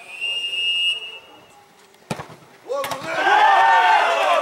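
A referee's whistle blown once, a steady high tone lasting about a second, signalling the free kick. About two seconds in comes a single sharp thud of the ball being struck, then loud overlapping shouting from players and onlookers as the free kick goes in.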